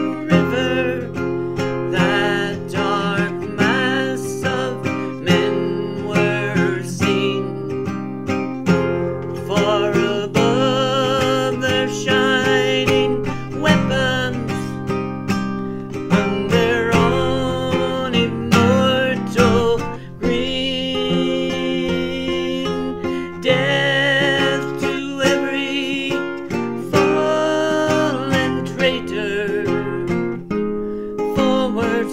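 Acoustic guitar playing an instrumental passage of an Irish folk ballad, chords strummed and picked steadily, with a wavering melody line over it.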